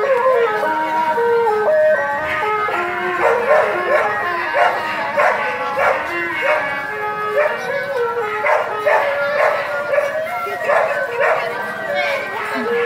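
Procession music, a wind-instrument melody of held notes stepping up and down. From about two seconds in, a dog barks over it again and again, about one or two barks a second.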